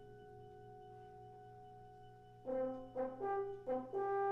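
Concert band brass: a soft held note lingers, then about two and a half seconds in the brass come in with a short figure of four accented notes, running into a loud sustained chord at the very end.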